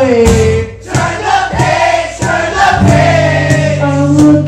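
Live acoustic band music: male voices singing a sliding melody over strummed acoustic guitar with sharp rhythmic hits, with a brief dip in loudness just under a second in.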